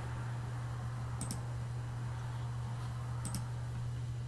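Computer mouse button clicking twice, each a quick pair of sharp clicks (press and release), over a steady low electrical hum.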